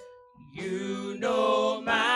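Gospel praise-team singers with instruments underneath. The voices come in about half a second in and build into loud, held, wavering notes.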